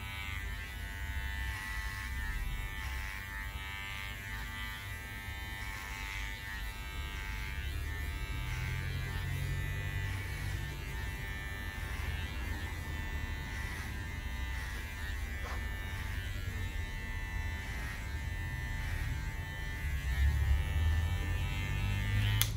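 Electric hair clipper fitted with a number 2 guard buzzing steadily as it cuts short hair.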